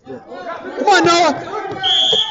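Shouting voices echoing in a gymnasium, with one loud yell about a second in. Near the end a referee's whistle blows a single high steady note.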